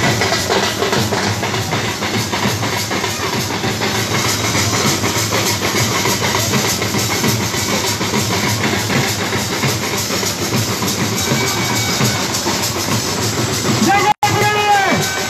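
Several hand-carried dhol barrel drums beaten together in a dense, steady drumming rhythm.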